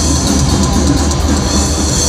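Thrash metal band playing live: distorted electric guitars, bass and a drum kit with rapid, closely spaced drum strokes, loud and dense throughout.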